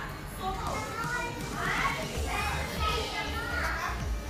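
High-pitched children's voices calling and chattering, with pitch sliding up and down, over a low background hum and faint music.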